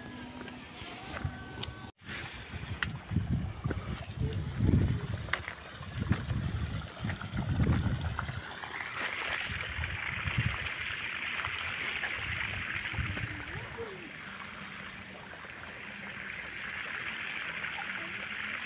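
Water running steadily through flooded rice-paddy terraces, a stream-like rush that settles in about halfway through. Irregular low rumbles come before it in the first half.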